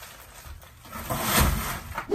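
Rustling handling noise that swells about a second in, with a soft thump in the middle, as the plastic-wrapped package and the camera are moved.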